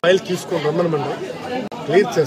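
Speech only: people talking, with several voices overlapping as chatter.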